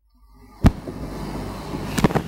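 Marker writing on a whiteboard, a dry scratching over a low rumble, with a sharp tap about two-thirds of a second in and another near the end.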